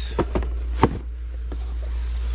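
A few light knocks and taps from boxed items being handled, the loudest about a second in, over a steady low hum.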